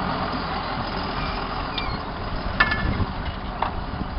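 John Deere tractor's diesel engine running steadily under load as it pulls a reversible plough away. A brief sharp click comes about two and a half seconds in, and a fainter one about a second later.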